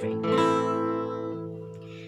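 Acoustic guitar strumming an open A major chord once, starting from the A string with the low E string left out, the chord ringing and slowly fading.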